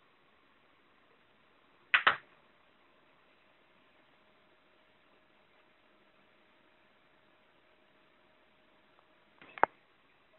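Quiet room broken by a sharp double click about two seconds in and a short cluster of clicks near the end, with a faint steady hum between them.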